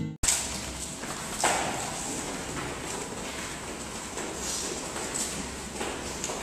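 Classroom room noise with a steady hiss, broken by a few scattered light knocks and taps, the clearest about a second and a half in. A strummed acoustic guitar piece cuts off at the very start.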